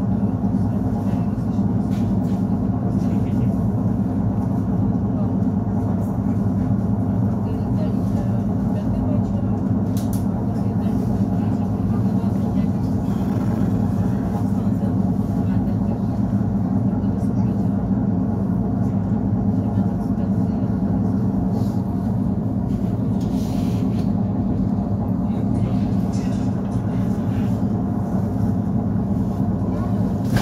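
Steady rumble and hum of an ER9-series electric multiple unit running along the line, heard from inside the passenger carriage, unchanging throughout.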